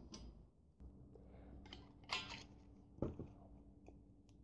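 Faint handling sounds of a steel tape measure and a square steel tube on a worktable: a short rattle about two seconds in and a sharp click about a second later, over a low faint hum.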